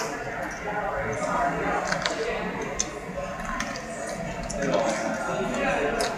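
Indistinct background chatter and room noise of a busy restaurant, with a few light clicks.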